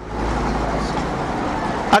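Steady background noise: an even hiss with a strong low rumble.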